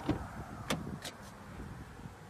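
A few light clicks and knocks from a car door being handled and opened, spaced irregularly over a low background.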